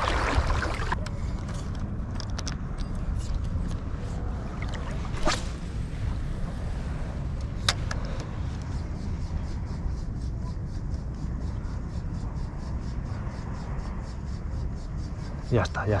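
Steady low outdoor background noise with two sharp clicks, and in the second half a faint, rapid, even ticking from a spinning reel being cranked as a lure is retrieved.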